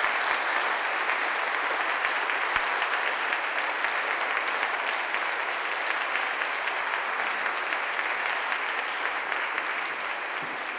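Audience applause: many people clapping in a dense, steady patter.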